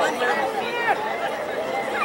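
Indistinct chatter of several people talking over one another, the voices of spectators and players at a soccer game.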